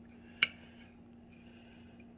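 A metal spoon clinks once against a ceramic plate as it scoops up cake, a single sharp click about half a second in.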